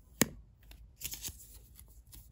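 A sharp click, then faint crinkling and ticking of thin plastic film as the protective wrap is peeled off an Apple Watch Sport Band.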